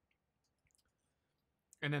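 Near silence with a few faint, small clicks, then a voice starts speaking near the end.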